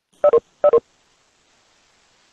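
A video-call notification chime sounds twice in quick succession, each a short two-note tone falling in pitch. This marks participants leaving the call.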